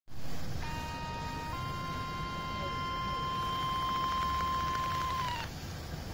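Nike Adapt BB self-lacing shoe's lacing motor whining steadily as it pulls the laces tight. The pitch steps up slightly about a second and a half in, then dips and cuts off near the end as the laces reach tension.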